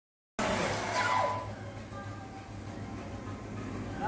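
Sound cuts in abruptly after silence: a steady hum with faint steady high tones, and a short spoken word about a second in, the start of a race-start countdown.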